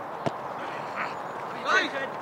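A goalkeeper's boot striking a football on a goal kick: one sharp thud about a quarter of a second in, over a steady outdoor hiss. A man's short shout follows near the end.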